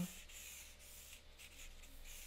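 Faint scratching of a Stampin' Blends alcohol marker tip drawn in short strokes across white cardstock, shading a grey line.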